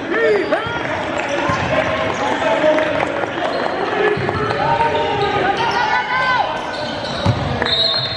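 Basketball being dribbled on a hardwood gym floor, with short sneaker squeaks from players cutting and shuffling, in a large echoing gym.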